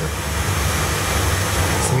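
Steady background noise: an even hiss with a low rumble underneath, unbroken through the pause.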